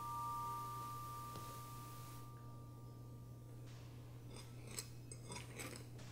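A single high ringing tone that slowly fades away over about three seconds, over a low steady hum. From about four seconds in, a metal fork clinks and scrapes on a ceramic plate.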